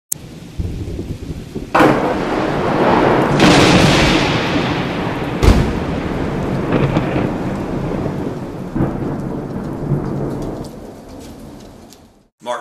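Thunderstorm sound effect: rain over rolling thunder, with a sudden thunderclap about two seconds in and another sharp crack about halfway through. It fades away near the end.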